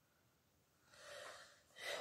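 Near silence, then about a second in a woman's audible breath, a soft rush of air lasting about half a second, just before she starts to speak.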